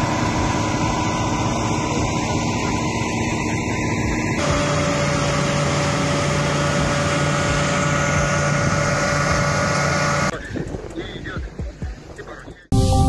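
Loud, steady rushing noise of firefighting at a large blaze, with the steady drone of a fire engine running underneath. The sound changes abruptly about four seconds in and turns quieter and uneven near the end.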